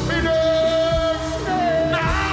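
Live dancehall music played loud: a voice holds one long sung note for about a second, then a shorter second note, over a steady bass.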